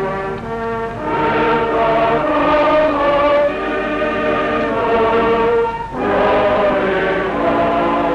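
Congregation singing a hymn together. Its held notes move from one to the next about every second, with a short pause for breath about six seconds in.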